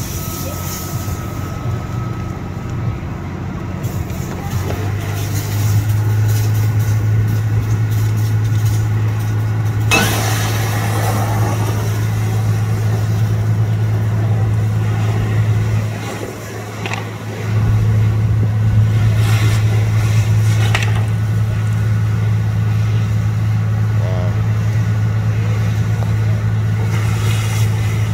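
Fire engine's diesel engine running to drive its pump, a steady low drone that steps up in level about five seconds in, drops away briefly past the middle and comes straight back.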